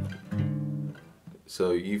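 Acoustic guitar chord ringing out and fading away over about the first second, followed by a man starting to speak.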